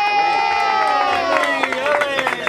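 A person's voice holds one long high cheer from the crowd over fainter talk. Scattered clapping starts near the end.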